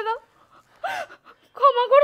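A woman sobbing: a sharp gasping breath about a second in, then a high, wavering wail.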